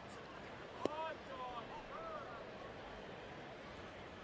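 Ballpark crowd ambience with a single sharp pop about a second in, the pitch smacking into the catcher's mitt, followed by a few short calls from voices in the crowd.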